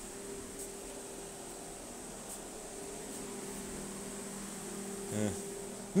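Steady faint hum in the background, with a short spoken "yeah" near the end.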